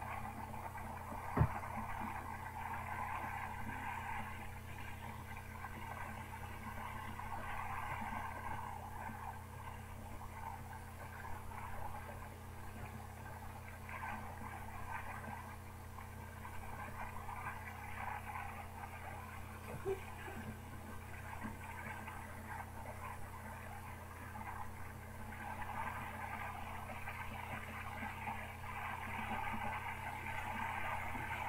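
Steady, fairly quiet wash of small waves on open water, swelling and easing, over a constant low hum, with one sharp knock about a second and a half in.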